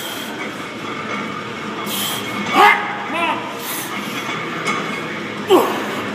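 A steady noisy gym background runs throughout, broken by several brief hissing bursts and two short voiced calls about two and a half and three seconds in, during a set of heavy barbell back squats.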